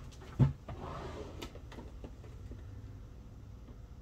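A single thump about half a second in, then a few faint ticks and rustles as a sheet of nail-art stickers is handled over a table, over a low steady hum.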